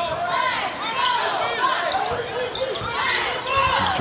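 Basketball shoes squeaking on a hardwood court, many short rising-and-falling chirps in quick succession, with a ball bouncing on the floor.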